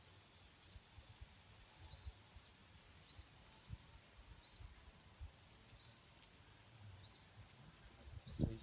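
Near silence outdoors, with a faint bird repeating a short high chirp roughly once a second.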